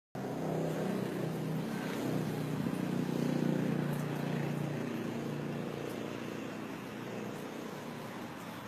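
Low, steady engine rumble of a motor vehicle, loudest in the first few seconds and slowly fading away.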